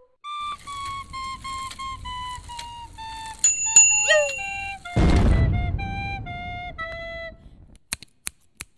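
A soprano recorder playing a slow, stepwise descending line of short notes. A high steady ringing tone joins it for about a second in the middle. A brief, loud burst of noise comes about five seconds in and fades quickly.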